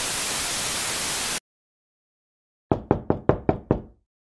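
Television static hiss that cuts off suddenly, then after a moment of silence a rapid run of about seven knocks on a door near the end.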